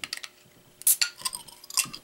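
Metal bottle opener clinking against a glass beer bottle as its crown cap is pried off: a string of sharp clicks and clinks, the loudest about a second in.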